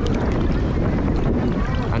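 Wind rumbling on an action camera's microphone, with sea water sloshing around a wading swimmer, a steady noisy wash without pitched tones.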